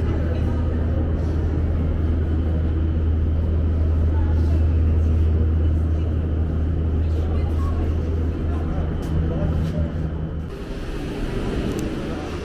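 Metro station ambience: a steady low rumble under the echoing voices of people in the hall, the rumble dropping away about ten seconds in.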